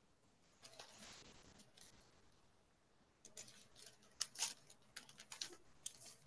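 Pages of a paper Bible being turned: a soft rustle about a second in, then a quick run of faint papery flicks and crackles in the second half as the pages are leafed through to find a passage.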